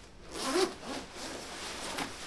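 Zipper of a hooded jacket being undone as it is taken off: several short zipping strokes, the loudest about half a second in.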